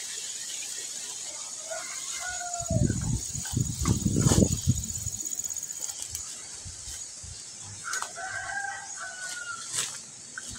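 A rooster crowing, faintly about two seconds in and again, longer and clearer, near the end. In between come loud footsteps and rustling through undergrowth. A steady high insect trill sounds through the first half.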